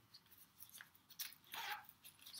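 Faint rustling and a few soft clicks of a small leather wallet being handled.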